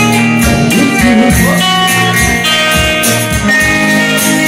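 Live band playing an instrumental passage without vocals: guitar melody, with some bent notes, over bass and a steady drum beat with cymbals.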